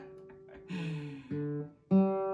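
Acoustic guitar being tuned: single strings are plucked three times and left to ring while a tuning peg is turned. The first note slides down in pitch, and the last pluck is the loudest.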